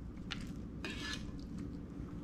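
Faint scraping and light taps of a fork on a plate while roast chicken is pulled apart, a few soft strokes in the first half.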